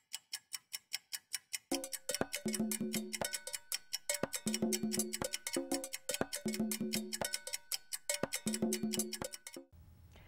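Title jingle built on a ticking clock: evenly spaced ticks alone for the first second or two, then a short repeating percussive tune with held tones over the ticking, stopping just before the end.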